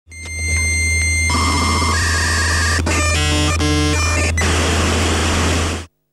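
Electronic logo sting: loud static noise over a steady low hum, with steady high tones that change partway and two short buzzing tones about halfway through, cutting off suddenly near the end.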